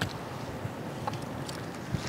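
Steady outdoor noise of wind and sea wash, with a short knock of a shore stone being lifted at the start and a faint tick about a second in.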